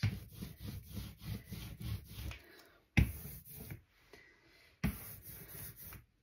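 Hand ink roller (brayer) rolling through tacky printing ink and over a collagraph plate, a sticky crackling rasp made of many fine ticks in back-and-forth strokes. Rolling pauses briefly around four seconds in, then starts again.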